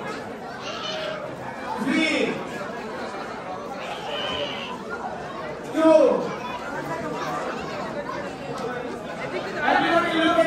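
Crowd chatter: many people talking at once in a large hall, with a few louder voices standing out about two seconds and six seconds in.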